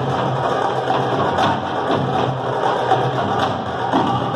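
Caucasian hand-drum percussion music: a dense, steady rhythm of short sharp drum strikes.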